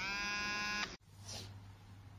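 A steady electric buzz with many overtones, rising briefly in pitch as it starts, held for just under a second and cut off abruptly with a click; a faint low hum follows.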